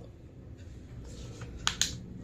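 Ballpoint pen writing on paper, a faint scratching over quiet room tone, then two sharp clicks in quick succession near the end.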